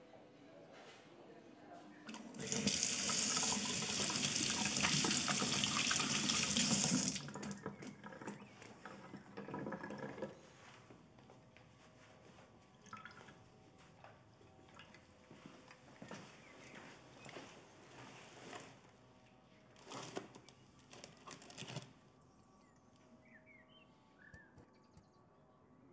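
A kitchen tap runs at full flow for about five seconds, starting about two seconds in, then is turned off. Quieter splashing and handling sounds follow, then scattered soft rustles and knocks, busiest near the end.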